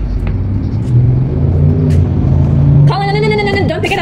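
A car engine rumbling low and building in loudness as it drives by close to the microphone. A high-pitched voice calls out for about a second near the end.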